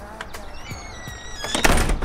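A door swinging on a squeaking hinge, then slammed shut near the end with a heavy thud.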